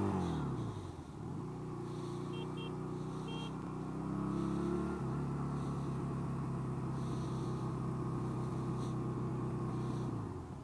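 1985 Honda Rebel 250's air-cooled parallel-twin engine running on the move. Its note drops in the first second as the engine slows, then holds steady. It changes to a new steady note about halfway through and falls away at the very end.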